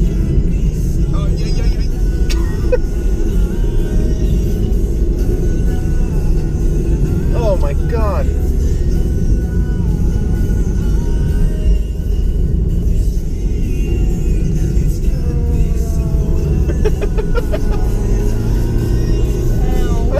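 Steady low rumble of a Toyota Yaris's engine and tyres on the road, heard from inside the cabin while driving.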